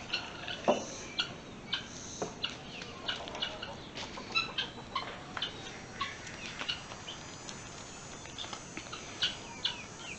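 Birds chirping: many short, separate chirps, several a second. A couple of sharp wooden knocks from boards being handled, the loudest about a second in.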